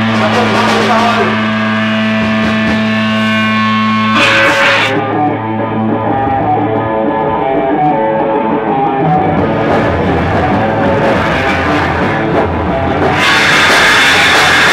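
Live punk band playing loud, distorted electric guitar, with a steady low droning note for the first few seconds; the band gets louder near the end.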